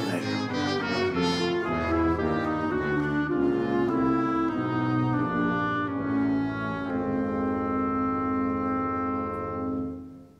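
Symphony orchestra playing, with clarinets among the winds: a run of sustained notes changing pitch, settling into a long held chord that fades out near the end.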